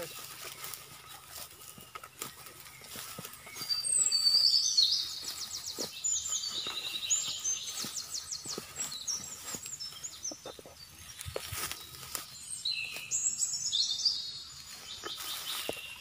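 A bird singing: a run of fast, high chirps and trills starting about four seconds in and lasting several seconds, then another run near the end.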